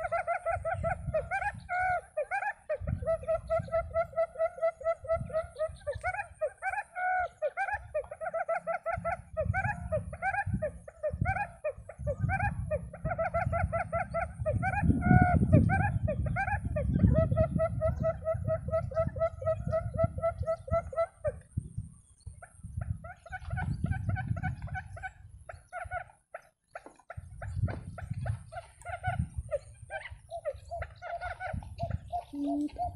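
A quail calling over and over in fast, trilled phrases, nearly without a break for about twenty seconds and then more broken. A low rumble like wind on the microphone runs underneath.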